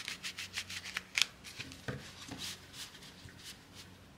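A tarot deck being shuffled and handled: a quick run of soft papery clicks for about a second and a half, then a few scattered ones.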